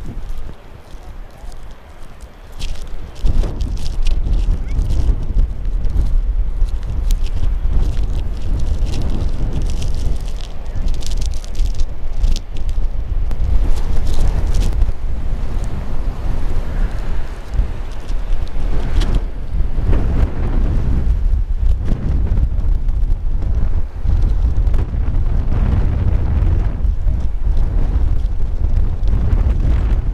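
Strong coastal wind of about 30–40 mph buffeting the camera microphone: a heavy low rumble that surges and dips in gusts. It is lighter for the first couple of seconds, then loud from about three seconds in.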